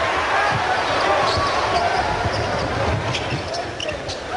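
Basketball dribbled on a hardwood court, low thumps at an uneven pace, over a steady din of arena crowd noise.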